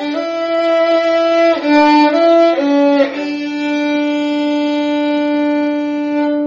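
Violin playing a hymn melody: a few short stepwise notes, then one long held note.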